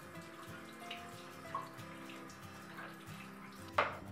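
Bathroom tap running into a sink as a makeup brush is rinsed under the stream, with faint background music of held notes. A sharp knock near the end.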